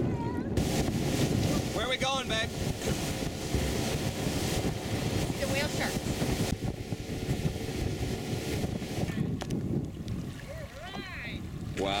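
Wind buffeting the microphone over water sloshing around a small open boat at sea, with a few brief snatches of voice.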